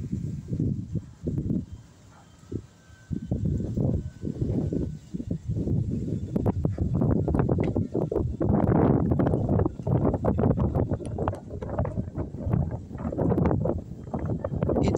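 Wind buffeting the microphone: a gusting low rumble that comes and goes, dipping briefly near the start and strongest in the second half.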